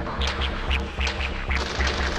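Old-school early-1990s techno playing from vinyl in a DJ mix: a steady, fast kick-and-bass beat about four pulses a second, with a repeating higher synth riff over it.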